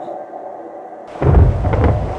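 A deep, loud rumble that starts suddenly about a second in and keeps going: a thunder-like sound effect of the sea beginning to rumble.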